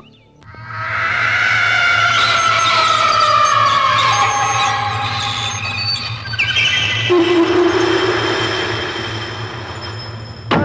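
Dramatic film background score: a loud sustained swell of layered held chords that builds up within the first second, one line slowly falling in pitch, then changing to a new held low chord about seven seconds in.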